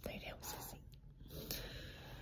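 Faint whispering close to the microphone, a few soft breathy bursts.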